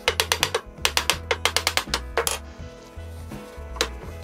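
Hammer tapping notched plywood leg pieces together into a cross-lap joint: a quick run of light taps for about two seconds, then two separate knocks, over background music.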